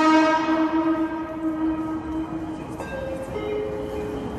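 A train's horn sounds once as the train approaches the platform: one pitched note that starts sharply and fades away over about two and a half seconds. About three seconds in, two other steady, higher tones begin.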